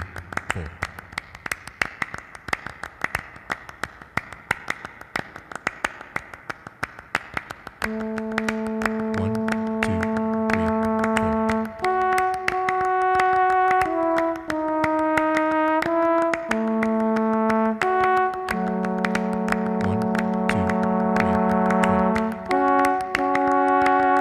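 A looped hand-percussion pattern of quick claps and taps repeats in a steady rhythm. About eight seconds in, trombone enters over it with a long held note, then layered trombone parts build sustained, changing chords.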